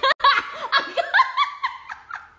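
A woman laughing loudly in high-pitched peals of repeated 'ha' sounds.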